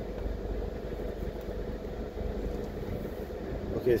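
A car's engine idling with a steady low hum and a faint steady whine, heard from inside the car while it sits nearly still.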